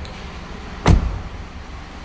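A car door slamming shut once, about a second in: the rear passenger door of a 2014 Nissan Rogue, closed with a solid thud.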